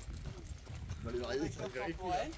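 Faint, indistinct voices of people talking in the background over a low steady rumble.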